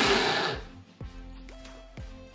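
Braun hand blender's mini chopper running at full speed through onion pieces, cutting off about half a second in. A click follows, with soft background music.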